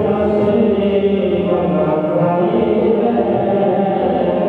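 Sikh kirtan: voices chanting a hymn over a held harmonium accompaniment, continuous and even.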